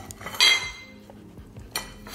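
Ceramic plates clinking and scraping on a tile floor as Siberian huskies lick them clean. One loud ringing clink comes about half a second in, and a shorter knock near the end.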